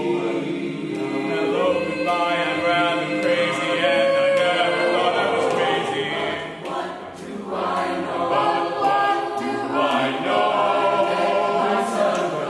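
Mixed chamber choir singing a cappella, several voice parts in close harmony with no instruments. The sound dips briefly about two-thirds of the way through, then the full choir comes back in.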